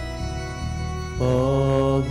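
Church organ holding sustained chords, joined about a second in by a voice singing a slow liturgical chant that gets louder as it enters.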